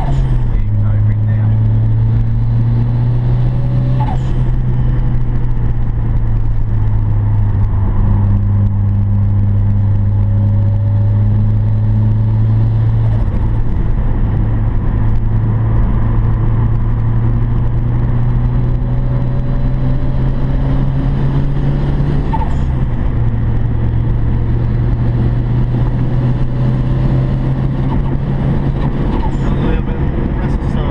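Ford Sierra Sapphire RS Cosworth's turbocharged four-cylinder engine heard from inside the cabin, running loud and steady under load at track speed. Its pitch climbs slowly and drops a few times as the driver shifts or lifts, about half a second in, near the middle and about two-thirds of the way through.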